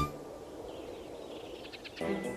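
Outdoor background ambience: a steady low hiss, with a short run of faint bird chirps about halfway through.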